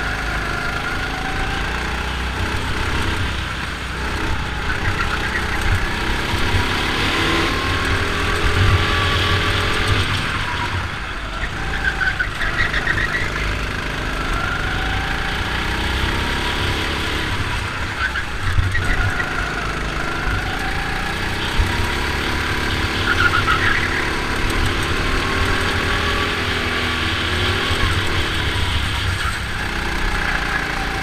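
Go-kart engine heard from the driver's seat, revving up and falling away again and again as the kart accelerates and slows through a lap, its pitch rising and dropping in long sweeps.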